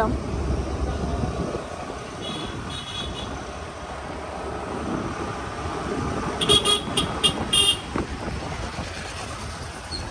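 Vehicle horn beeping in street traffic over the steady running noise of a scooter ride: a brief beep about two and a half seconds in, then a quick run of short beeps between six and a half and eight seconds.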